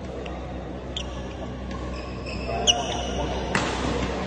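Badminton rally: a few sharp racket hits on the shuttlecock, about one a second, with the strongest near the end, and court shoes squeaking on the hall floor.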